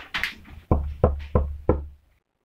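Knuckles knocking on a door, four knocks about a third of a second apart with a deep thud.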